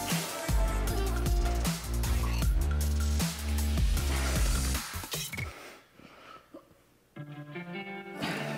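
Electronic background music with a heavy bass beat. It fades almost to silence about five and a half seconds in, and a new, lighter section of music starts near the end.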